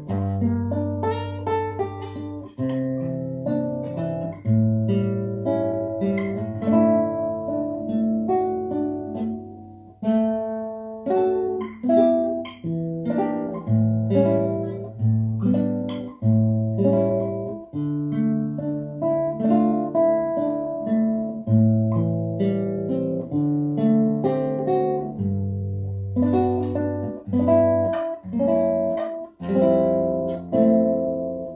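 Nylon-string classical guitar played fingerstyle: plucked chords and melody notes ringing over held bass notes, with a brief break in the playing about ten seconds in.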